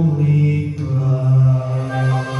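Men's voices singing a Christian song together into microphones, holding long low notes that shift pitch about halfway through.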